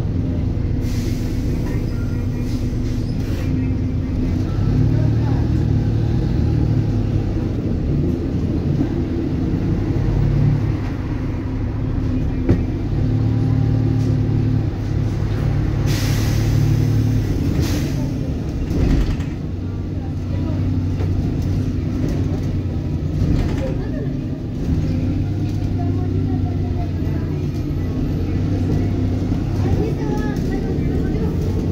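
City bus driving, heard from inside: the Volvo B290R's rear-mounted diesel engine runs under load, its pitch stepping up and down as it pulls through the gears. Short bursts of hiss come about a second in and again around the middle.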